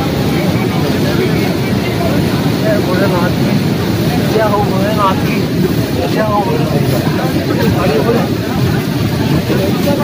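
Steady, loud rush of the fast-flowing Bhagirathi, the upper Ganga, in spate beside the ghat, with people's voices faint beneath it.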